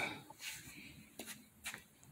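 A few faint rustles and soft taps against quiet room tone.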